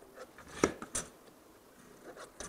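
Pencil drawing a line along a straight edge on a wooden board: faint scratching, with a few light clicks and taps in the first second, then quiet.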